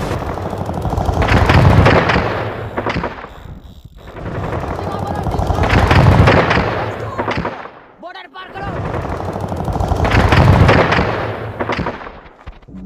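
Machine-gun fire sound effect: three long volleys of rapid shots, each building up and then fading, with brief lulls about four and eight seconds in.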